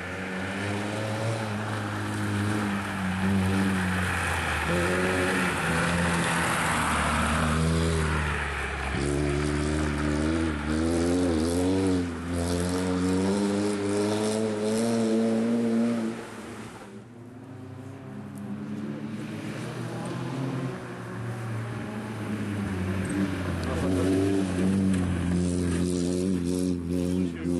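Peugeot 106 rally car's four-cylinder engine revving hard through the gears, pitch climbing and dropping with short lifts between shifts. It fades a little past the middle, then builds again as the car comes closer.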